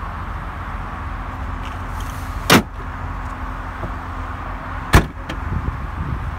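Two loud, sharp slams about two and a half seconds apart, the first the 2007 BMW X5's rear tailgate being shut, over a steady low outdoor rumble.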